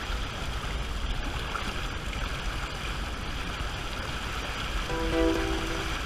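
Steady rush of water along the hull and churning wake of a small sailing trimaran under way, with a low rumble of wind on the microphone. About five seconds in, a few held musical notes come in over it.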